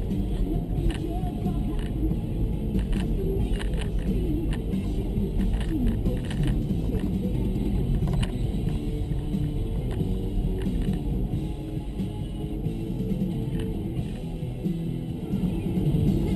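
Music playing on a van's stereo inside the cab, over the steady rumble of the van driving along the road.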